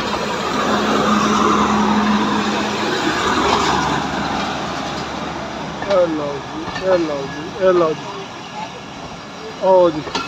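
Pakistan Railways passenger train rolling out past the platform, its coaches making a steady rumble that fades gradually. In the second half, people shout calls several times, about a second apart.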